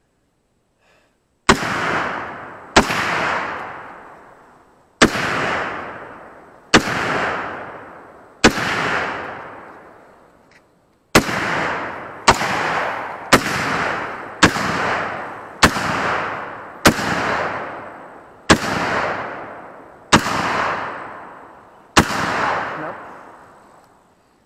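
Sig PM400 AR-15 pistol fired semi-automatically: fourteen single shots, one to two and a half seconds apart, each sharp crack trailing off in a long echo, with a quicker run of shots in the middle.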